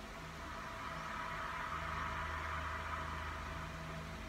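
Ambient cinematic intro from a music video's soundtrack: a steady low hum under a hissing swell that builds over the first two seconds and then eases slightly.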